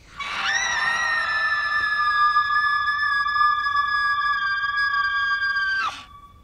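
A boy's high-pitched, unnaturally steady scream, held on one shrill note for about five and a half seconds: it rises briefly as it starts, sags slightly in pitch, and cuts off abruptly near the end.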